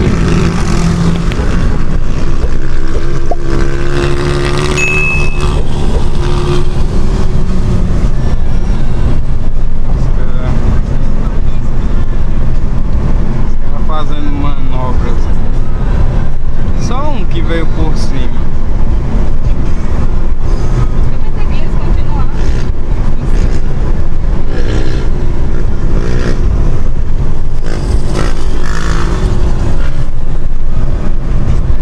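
Steady engine and road noise heard inside the cabin of a Ford Focus 2.0 cruising on a paved road, with faint voices now and then.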